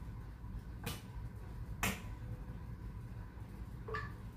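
Two sharp clicks about a second apart, then a fainter one near the end, from a laptop's keys or trackpad being pressed, over a low steady background hum.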